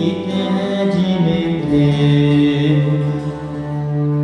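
Live band music: a song played on acoustic instruments, with long sustained notes and a low held tone that enters a little before halfway through.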